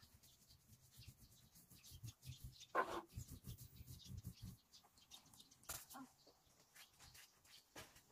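Faint handling sounds of tools and items being picked through in a small basket: scattered light knocks and rustles, with one short louder clunk about three seconds in.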